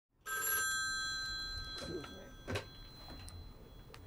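A landline telephone's bell rings in one short burst about a quarter second in, then its ringing tone dies away slowly. A single sharp knock comes about two and a half seconds in.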